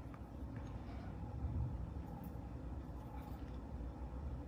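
Quiet room tone: a low steady rumble with a few faint soft ticks.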